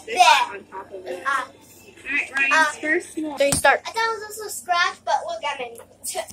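Children's voices chattering and calling out, with one sharp thump a little past halfway.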